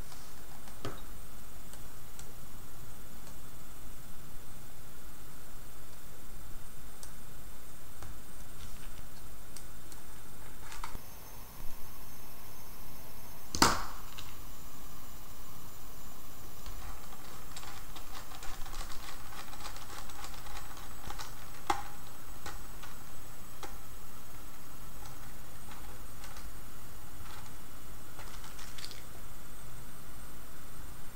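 Faint, scattered clicks and taps of small wires and a screw terminal block being handled over a steady hiss, with one sharp click a little before halfway: motor wires being fitted into the screw terminals of a motor driver board.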